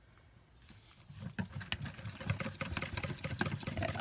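A wire whisk stirs thick pine tar soap batter in a plastic bowl. After a quiet first second, rapid irregular clicks and scrapes of the whisk against the bowl build up.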